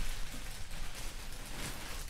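Black plastic garbage bag rustling and crinkling as clothes are rummaged through and pulled out of it, a steady crackle of many small ticks.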